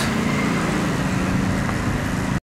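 A motor vehicle engine running close by, a steady low hum over road and traffic noise.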